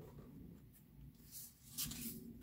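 Faint rustle of paper cards sliding against each other on a table, in two short brushes, one about halfway through and one near the end.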